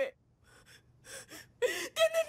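A tearful young woman's short, shaky gasping breaths while crying, followed near the end by the start of more choked speech.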